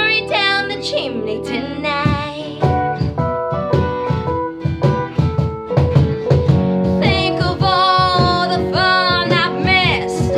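A woman singing lead in a jazzy Christmas pop cover, accompanied by acoustic guitars. Her held notes waver with vibrato and are loudest over the last three seconds.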